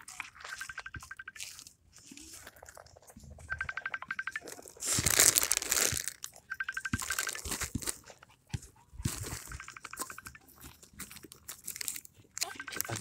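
Rustling and crackling noise on a phone's microphone, loudest in a burst about five seconds in. A short, high, rapid trill repeats three times, a few seconds apart.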